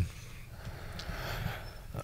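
A pause in speech at a close studio microphone: a faint, steady low hum with a soft breath and one small click about a second in.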